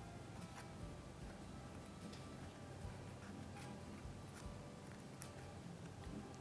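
Craft scissors snipping thin wafer paper along a wire edge: light, irregular clicks about every half second to a second, over faint background music.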